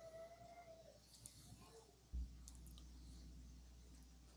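Near silence in a room, with a few faint clicks and a soft low thump about two seconds in.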